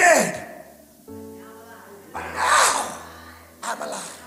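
Three loud, breathy bursts of breath into a handheld microphone, the first at the very start and the last just before the end, over soft sustained background music.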